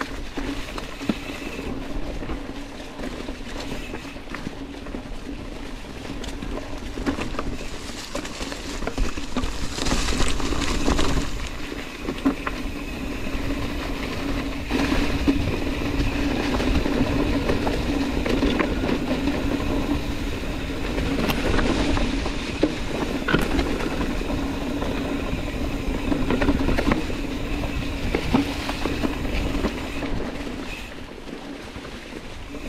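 Yeti SB115 mountain bike rolling along a dirt trail covered in dry leaves: continuous tyre and leaf noise with frequent small rattles and knocks from the bike over roots and rocks. A steady hum runs underneath, loudest through the middle.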